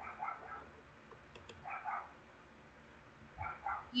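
A dog barking faintly in the background: three short barks about a second and a half apart.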